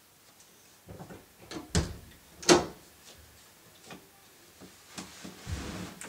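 A few knocks and clunks in a small room, the loudest about two and a half seconds in, followed by lighter ticks and a short scuffling noise near the end.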